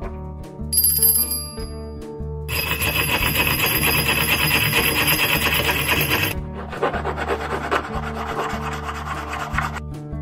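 A small brass hand bell rung briefly about a second in, its high ringing lasting a second or so. Then a small frame saw with a fine metal blade rasps through the top of the brass bell held in a vise, in two long stretches of strokes, the second lower and less bright. Background music plays throughout.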